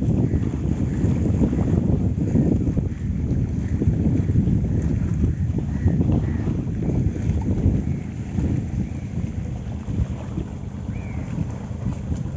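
Wind buffeting the microphone: a loud, gusting low rumble that eases a little after about eight seconds.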